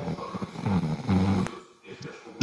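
A muffled, low voice coming over an online call line, rough and indistinct, fading out near the end.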